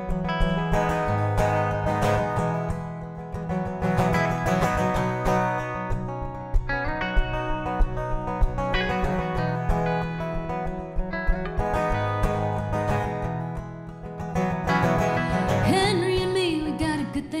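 Acoustic guitar and electric guitar playing the instrumental introduction of a song live, before any singing comes in.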